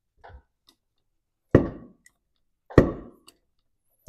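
Two sharp knocks a little over a second apart, with a faint click before them, from a wrench on the crankshaft as a classic Ford Thunderbird engine is turned over by hand.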